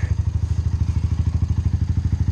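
Honda Rancher four-wheeler's single-cylinder four-stroke engine idling evenly through an aftermarket HMF exhaust, a quick steady putter.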